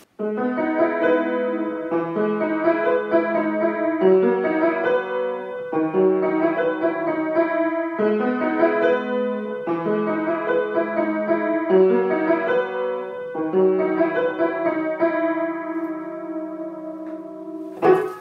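An old grand piano played by hand: a repeating progression of sustained chords, changing about every two seconds, with the last chord left to ring out near the end.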